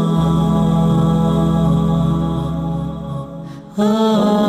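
Background music of sustained, layered tones. They fade out near the end, and a new phrase starts just before the close.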